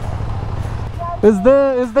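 Motorcycle engines idling with a steady low rumble while stopped; a man starts speaking a little over a second in.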